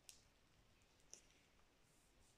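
Near silence, with two faint short clicks about a second apart from hands handling the pages of a hardback book.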